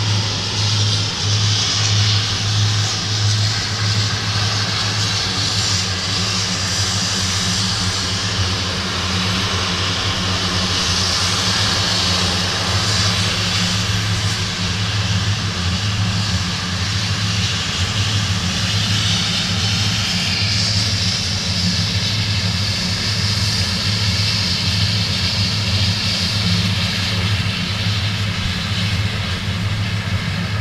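Twin turboprop engines of a Jetstream 41 running steadily as the airliner taxis after landing. A low, even propeller hum sits under a high rushing turbine noise that swells slightly in the second half.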